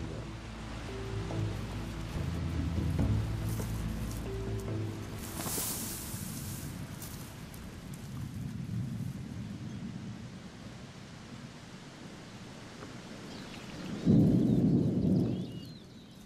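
Steady heavy rain, with a loud, low rumble of thunder about fourteen seconds in. Low held music notes sound under the rain in the first few seconds.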